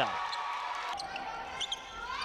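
Indoor basketball gym ambience: a steady hall murmur with a couple of short, light knocks.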